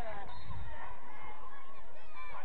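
Overlapping, indistinct shouts and calls of football spectators and players, with no clear words.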